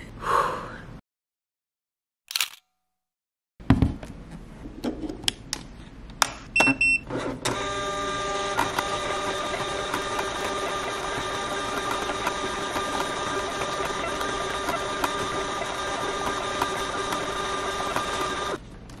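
Desktop shipping-label printer feeding fanfold labels, running with a steady motor whine from about seven seconds in, after some handling clicks and a couple of short beeps.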